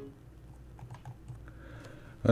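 Several faint, light clicks of a computer keyboard, spaced irregularly through a quiet moment.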